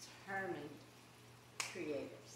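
A woman's voice in short bits of speech, with one sharp snap-like click about one and a half seconds in, over a low steady hum.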